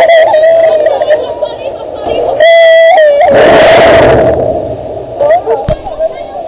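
People's voices yelling and whooping without words, with a loud held cry about two and a half seconds in, followed by about a second of rushing noise.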